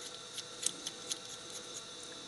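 A few faint, light clicks as fingers handle the screw of a shop-made expanding mandrel held in a lathe chuck.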